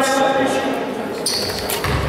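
A basketball bouncing on a hardwood court, one low thud near the end, amid indistinct voices of players and spectators.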